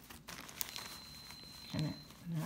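A clear plastic zip bag crinkling as the sequined fabric inside it is handled, with a short click and a brief vocal sound near the end.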